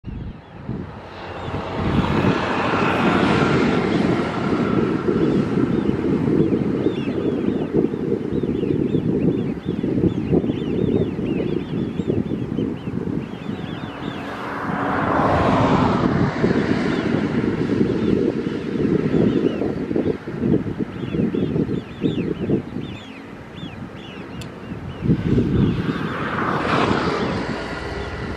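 Wind buffeting the camera's microphone in a heavy, unbroken low rumble. Above it run many faint, short high chirps, and three times a broader rushing sound swells up and fades over a couple of seconds.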